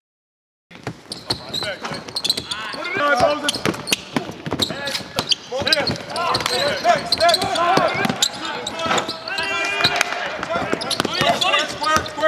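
Basketball practice: a ball bouncing on the court with many quick sharp knocks, mixed with players shouting and calling out. It is silent for a brief moment at the start, then the sound comes in.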